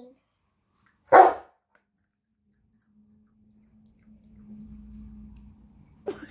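A single short, loud dog bark about a second in, followed by a faint steady hum through the last few seconds.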